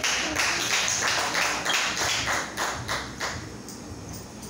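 A small audience clapping, several claps a second, dying away a little past three seconds in.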